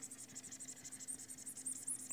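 Stylus rubbing quickly back and forth on a pen tablet while erasing handwriting: a fast run of faint, high scratching strokes, over a faint steady hum.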